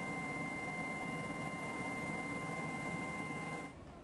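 Aircraft engine noise heard from inside the cabin: a steady rumbling hiss with a constant high-pitched whine over it, cutting off shortly before the end.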